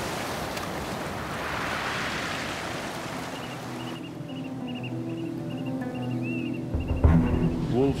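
Surf washing over a rocky shore, then soft background music with held notes takes over about halfway through. A low rumble comes in near the end.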